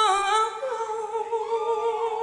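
A woman singing live into a microphone, unaccompanied: a short slide down at the start, then one long held note with vibrato.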